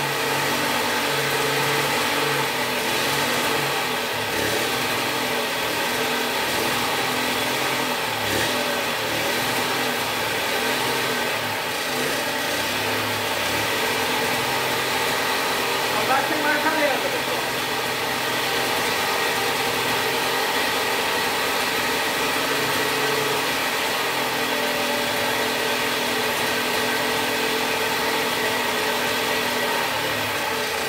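Homemade mini bike's small two-stroke engine running steadily at low speed, its idle not yet adjusted and its throttle improvised. It briefly picks up and gets louder about sixteen seconds in.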